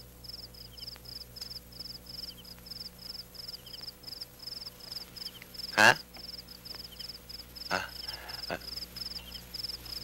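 Cricket chirping steadily, a regular high chirp about three times a second, with fainter lower chirps now and then over a low steady hum.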